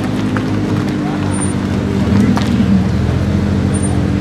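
Supercar engines idling steadily side by side at a drag-race start line, with crowd voices chattering over them.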